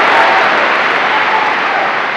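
Large audience applauding, a dense, steady clatter that eases slightly.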